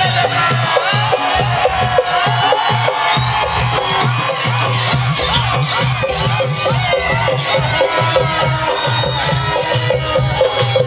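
Live Garhwali folk band playing with a steady, rhythmic beat, over a large crowd cheering and shouting.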